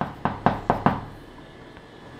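Chalk tapping on a chalkboard during writing: a quick run of about six sharp taps in the first second, then it goes quiet.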